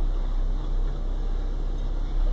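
A steady low hum with a faint hiss over it, unchanging and with no other sound standing out.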